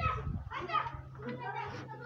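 Children's voices chattering softly in the background over a low steady hum.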